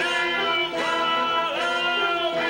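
Theatre pit orchestra playing a short instrumental passage of held notes, with strings prominent.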